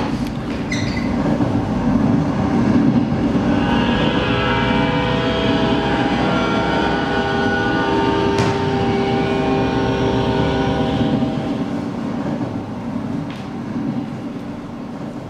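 Train sound effect played through a theatre's sound system: a loud, steady rumble of an approaching train, with a sustained multi-note train horn sounding from about four seconds in until about eleven. The rumble then eases off.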